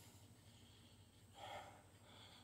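Near silence, with a faint breath out from a man about a second and a half in.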